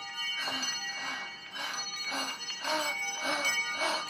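Bells shaken in a slow, even rhythm, about two jangles a second, over sustained ringing bell tones.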